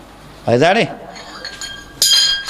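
A pause in a man's speech, broken by one short vocal sound with a falling pitch about half a second in. Faint, steady, high clinking or ringing tones begin near the end.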